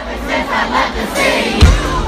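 Large concert crowd cheering and shouting together over loud music, with a deep bass hit about one and a half seconds in.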